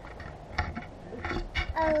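A few light clicks and knocks from a GoPro being handled on a selfie pole, with a girl's short 'oh' near the end.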